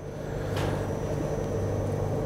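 A steady low mechanical hum, growing louder about half a second in and then holding level.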